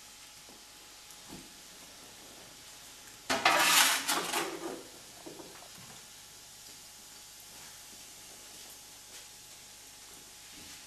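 Long metal oven rake scraping the burning embers across the floor of a wood-fired brick bread oven. There is one loud, harsh scrape about three seconds in that lasts about a second and a half, with a few light knocks of the tool around it.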